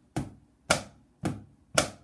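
Wooden drumsticks striking a book as a stand-in practice pad, four sharp taps about two a second in a steady beat.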